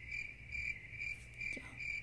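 A steady, high-pitched chirping trill, pulsing about three times a second, that stops abruptly at the end.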